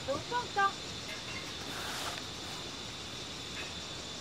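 Faint distant voices briefly at the start, then a steady, quiet outdoor background hiss with no distinct event.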